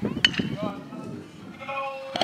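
A baseball bat hitting a pitched ball with a sharp crack about a quarter second in, followed by players and spectators shouting, with one long wavering yell near the end.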